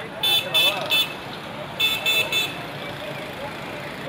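A high-pitched vehicle horn beeping in two quick sets of three short blasts, over people talking in the background.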